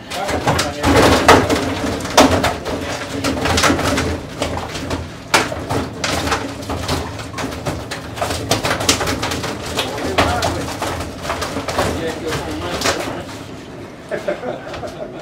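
Water sloshing and live bass flopping in a plastic weigh-in bag as it is handled over the scale, with repeated splashes and plastic rustles.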